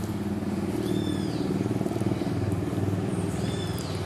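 An engine runs steadily with a fine, rapid pulse. Two short high chirps rise and fall, about a second in and near the end.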